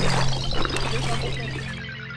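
Edited-in background music: a held low note and a tone gliding slowly down in pitch, both fading out steadily.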